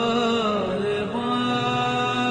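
Qawwali music: sustained, reedy held chords under a melodic line that bends up and down, settling onto a new steady chord about a second in.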